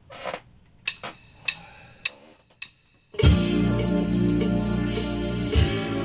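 A few light clicks and knocks, then about three seconds in a backing track starts abruptly, played back from a keyboard workstation's sequencer: a full band arrangement with bass, guitar and a drum beat.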